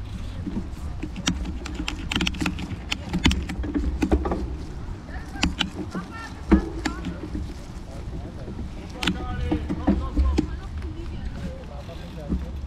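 Irregular sharp clicks and knocks, with voices talking in the background and a steady low rumble.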